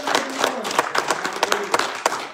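Hands clapping in applause: dense, irregular claps throughout.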